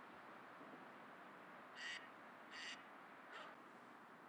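Faint outdoor background with a bird giving three short, harsh calls in the second half.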